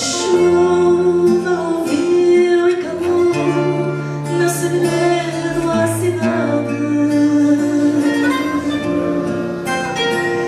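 Live fado: a Portuguese guitar and an acoustic guitar playing together, with a woman singing.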